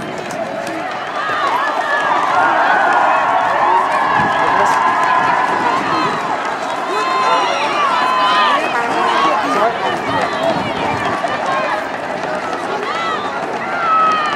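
Many voices shouting and cheering at once at a rugby match, high-pitched calls and yells overlapping one another.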